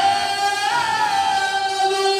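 A man singing a devotional qasida into a microphone, holding long high notes with a wavering pitch.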